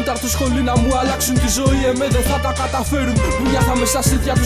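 Greek hip hop track: a male voice rapping over a beat with a steady bass line and regular drum hits.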